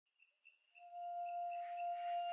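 A single steady ringing tone fades in about a second in and holds, as a sustained musical note.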